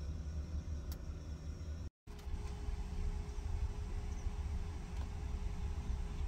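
Steady low rumble of engine and road noise heard from inside a vehicle's cabin. It cuts out completely for a moment about two seconds in, then resumes with a faint steady hum over it.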